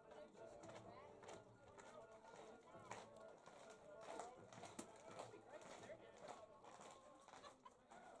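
Near silence at a ballfield: faint, distant voices of players and spectators, with a single sharp click about halfway through.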